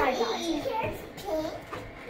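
Young children's voices: wordless chatter and short calls, with no clear words.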